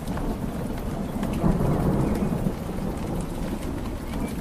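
Steady background noise: a low rumble under a rushing hiss that swells midway, with scattered faint ticks.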